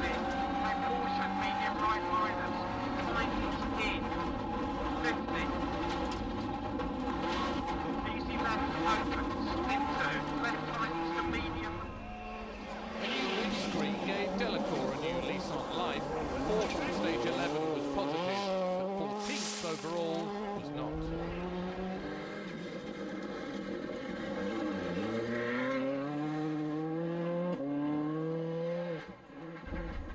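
Hyundai Accent WRC rally car's turbocharged engine held at high revs, heard from inside the cabin on a fast stage. From about twelve seconds in, a rally car's engine is heard from outside. Its revs rise and fall, then climb several times in a row near the end as it shifts up through the gears.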